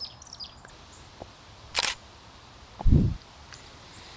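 A single camera shutter click a little under two seconds in, followed about a second later by a short low thump.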